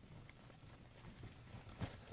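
Faint rubbing and soft scattered taps of a blackboard eraser being wiped across a chalkboard, with one slightly louder knock near the end.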